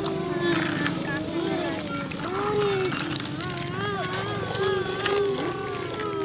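A child's voice making long, wavering vocal engine noises while playing with a toy excavator, the pitch rising and falling continuously.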